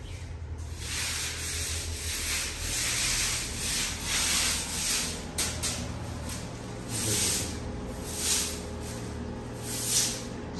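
Broom sweeping dust and grit across a marble floor: repeated short swishing strokes, a little more than one a second.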